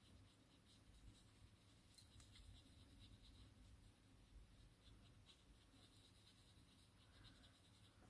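Faint scratching of a water brush's tip stroking over stamped card, blending ink, in near silence.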